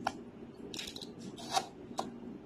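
Kitchen knife cutting through a beetroot on a cutting board: a few short scraping cuts and light knocks of the blade against the board.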